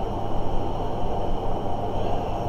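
Steady low rumble and hum of background noise with no clear events.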